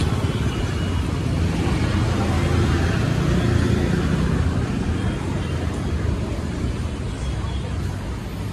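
Street traffic: a steady low rumble of car and motorcycle engines driving past close by, easing a little in the second half.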